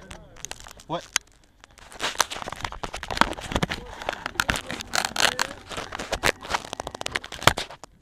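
Close rustling, crinkling and irregular clicks from hands and clothing working right beside the microphone as a mechanic handles things inside a single-seater's cockpit; dense from about two seconds in until near the end.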